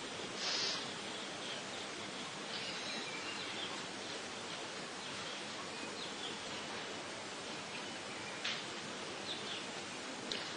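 Steady background hiss with faint bird chirps now and then, and a soft click near the end.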